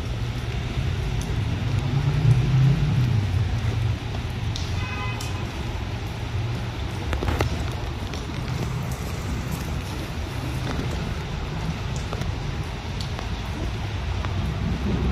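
Outdoor city-street ambience on a wet day: a steady low rumble with a light hiss over it. A brief faint pitched sound about five seconds in, and a few faint clicks.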